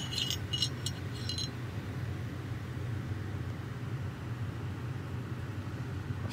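Light metallic clicks from the parts of a Glock G17 Gen5 pistol being handled as it is field-stripped: about six quick clicks in the first second and a half, then a steady low hum alone.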